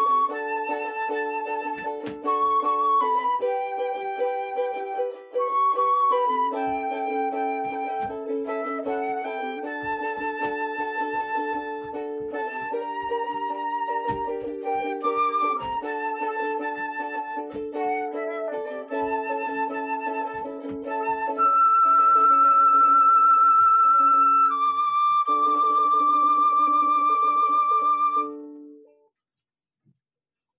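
Silver concert flute playing a lilting melody over strummed ukulele chords. Near the end the flute holds two long high notes, and both instruments stop together a second or so before the end.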